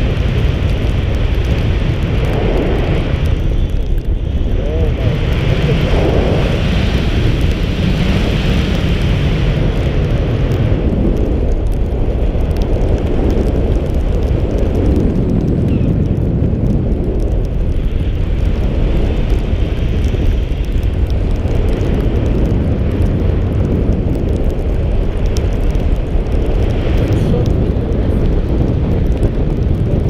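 Airflow buffeting an action camera's microphone in flight under a tandem paraglider: a loud, steady rushing roar.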